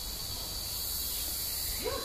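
Steady outdoor background noise in a garden: an even hiss with a low rumble and a faint, thin, high steady tone.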